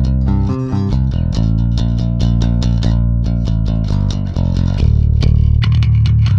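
Electric bass guitar riff played back from a mix session: a loud, fast run of picked low notes.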